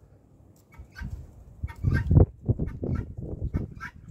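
Domestic poultry calling: a run of short clucking calls that starts about a second in and goes on to the end, loudest a little after two seconds.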